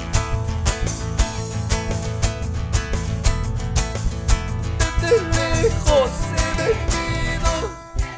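Live Andean carnaval music: nylon-string guitars strummed over electric bass with a quick, steady beat. The music drops in loudness just before the end.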